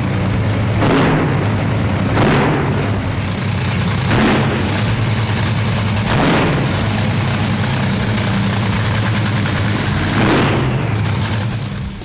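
Top fuel dragster's supercharged nitromethane V8 running loudly on the spot, its throttle blipped about five times: about a second in, near two, four and six seconds, and again near ten seconds.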